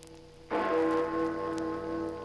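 Big Ben's great hour bell struck once about half a second in, its deep ringing tones sustaining and pulsing slowly, over the fading hum of the previous stroke. Scattered crackle from the worn 78 rpm shellac record runs underneath.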